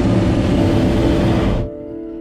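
Hot air balloon's twin propane burner firing in one loud blast that cuts off about one and a half seconds in, with background music underneath.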